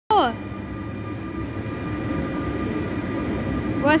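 Red SBB Re 460 electric locomotive and double-deck coaches moving through the station: a steady low rumble with faint steady whining tones from the electric drive. A brief loud falling tone sounds at the very start.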